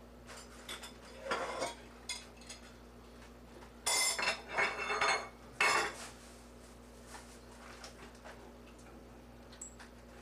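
Kitchen clatter of a knife, utensils and dishes: a few light clicks, then bursts of clinking and scraping, the loudest about four to six seconds in.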